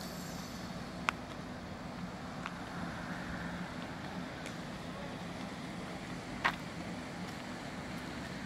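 A steady low engine hum under outdoor background noise, with two short sharp clicks, one about a second in and one near the end.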